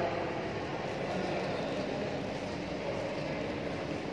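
Steady, even background noise with no distinct sound standing out.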